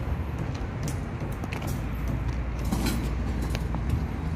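Construction-site background: a steady low rumble with a few scattered sharp clicks and knocks.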